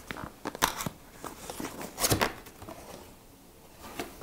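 A white cardboard product box being handled and opened: thin card scraping and crinkling as the lid and flaps are lifted, with a few sharp taps and clicks, the loudest about two seconds in.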